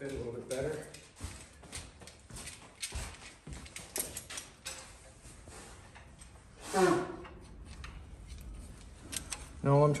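Scattered light clicks, knocks and rattles of small steel bracket pieces and hand tools being picked up, set down and fitted in a bench vise.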